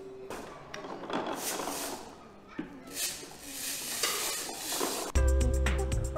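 Indistinct room noise with a few soft knocks and rustles, then background music with a strong bass comes in suddenly about five seconds in.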